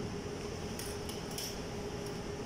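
Two faint, light metallic clinks, a little under a second apart, from the lid of a metal sterilization container being handled over the instrument tray, over a steady low hum.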